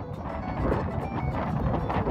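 Strong wind buffeting an outdoor phone microphone at a lagoon's edge: a dense, rough noise, heaviest in the low end, with faint music underneath.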